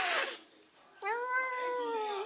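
A domestic cat meowing: one long, drawn-out meow starting about halfway in, held steady and sagging slightly in pitch as it ends. It is preceded by a short rush of noise at the very start.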